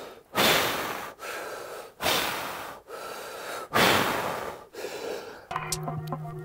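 A man takes three deep breaths in quick succession, each about a second long and fading away: Wim Hof-style breathing to build up for a hard blowgun shot. A few short clicks follow near the end.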